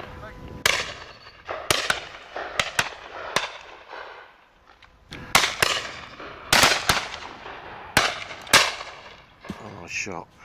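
Shotgun shots from a line of guns firing at driven game birds: about a dozen reports at varying distances, several in quick doubles, each with a short echo. There is a lull around four to five seconds in.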